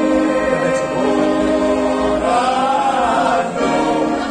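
A small group of men singing together in harmony, holding long notes, with a phrase that rises and falls in the middle.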